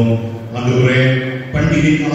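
A man's voice reciting a Bible passage aloud in Tamil in a slow, chant-like cadence, with long held syllables and short pauses between phrases, through a microphone.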